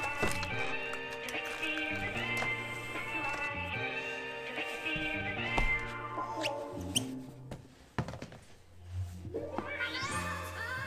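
Background music with sustained melodic notes that drops away briefly about eight seconds in, then comes back near the end.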